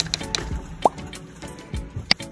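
Background music with a short, rising cartoon 'plop' pop sound effect a little under a second in.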